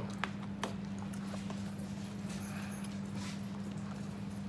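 A few soft clicks of spoons against dessert bowls while eating banana pudding, over a steady low hum.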